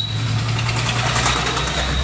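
A small Hyundai hatchback's petrol engine running under acceleration, heard inside the cabin with road noise. Its steady low tone drops lower about a second and a half in.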